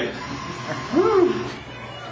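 A single short vocal cry about a second in, its pitch rising and then falling, like a drawn-out "oh" or "hey", over steady background noise.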